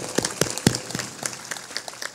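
A large seated audience clapping together, a dense patter of hand claps that thins out toward the end.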